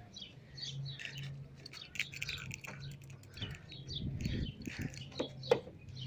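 Small birds chirping in short, repeated calls over a steady low hum.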